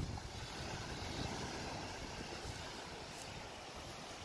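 Steady wind rumbling on the microphone over the wash of waves breaking on a rocky shore.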